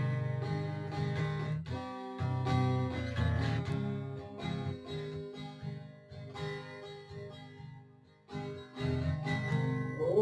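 Acoustic guitar playing an instrumental passage between sung verses, with picked notes over a steady bass line; the playing drops out for a moment about eight seconds in, then picks up again.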